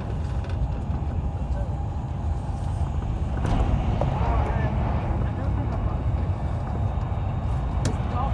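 Running noise of an Avanti West Coast Class 390 Pendolino electric train at speed, heard from inside the carriage: a steady low rumble that grows louder and hissier about three and a half seconds in.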